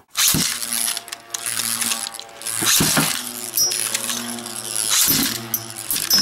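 Beyblade spinning tops launched from a ripcord launcher into a plastic stadium. They spin with a steady whirring hum, and a few sharp clacks mark the launch and the tops striking each other.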